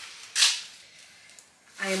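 A single short, sharp swish as a pair of yellow rubber household gloves is shaken out and handled, followed by faint rubbery rustling.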